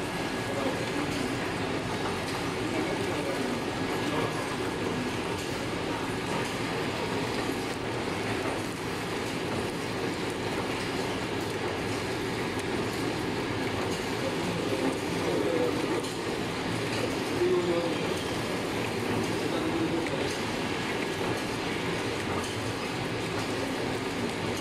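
Automatic pillow-type face mask packing machine running steadily, an even mechanical noise without sudden breaks.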